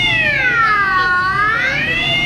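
Police siren wailing: one slow, steady tone that falls in pitch and climbs back up once.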